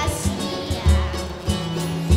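Live samba band playing: cavaquinho and acoustic guitar strumming over a steady low beat, with little singing.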